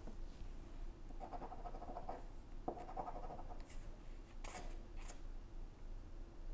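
A coin scraping the coating off a scratch-off lottery ticket: soft rubbing in the first half, then three short, sharper scrapes in the second half.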